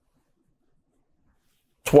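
Near silence: a pause in a man's talk, with his voice coming back in just before the end.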